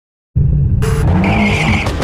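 A car's engine running loud with its tyres squealing, starting suddenly just after the opening; the squeal rises over it about a second in and holds for most of a second.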